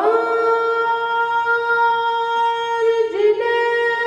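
A boy's voice, unaccompanied, chanting melodically into a microphone: one long note held steady for about three seconds, then a brief dip lower in pitch near the end.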